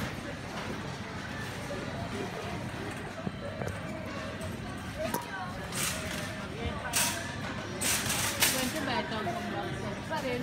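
Supermarket ambience: indistinct voices of other shoppers, with a few brief rattles and clatters about six to eight seconds in.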